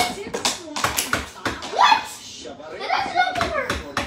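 A string of sharp knocks and thumps, the loudest right at the start, with a child's voice calling out wordlessly between them.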